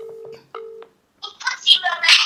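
A phone's ringback tone playing through its loudspeaker: one double ring, two short beeps with a brief gap between them. About a second later a louder voice comes through the speaker as the call is answered.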